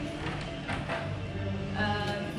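Background music, with a few soft footsteps on a hard floor in the first second.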